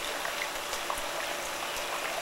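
Steady rush of running water in a shallow sea-turtle holding tank, with a few faint ticks.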